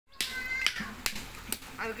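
Small hand hammer striking red brick over and over, breaking it into chips: sharp clacks about two a second, four of them in quick succession.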